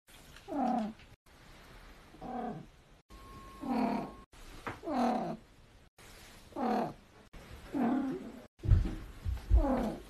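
A domestic cat calling again and again: about eight short, drawn-out meows, each falling in pitch, roughly one a second. Near the end come a few loud low thumps of handling.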